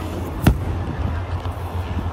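A hinged storage lid on a pontoon boat's lounge seat shut, giving a single sharp thud about half a second in, over a steady low hum.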